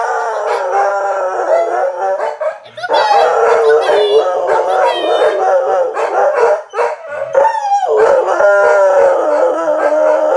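Dogs howling together, loud, in long wavering howls, with brief breaks about three seconds in and again near seven seconds.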